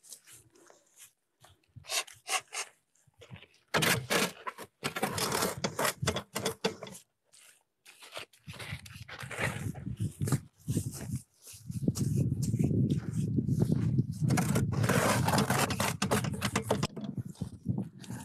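Scraping and rustling of wet adobe mud being worked by hand in a wooden brick mold and shovelled in. After a few faint clicks it turns into scraping stretches, and the noise is loudest from about two-thirds of the way in.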